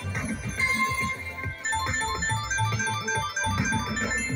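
Ultimate Fire Link slot machine playing its electronic game music: a quick run of short chiming notes as a free game is awarded and a win is tallied, over a low background rumble.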